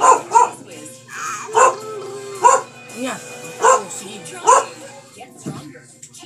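A dog barking, about six short sharp barks roughly a second apart.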